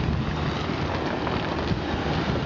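Steady wind noise on the microphone outdoors, with a low, steady hum underneath.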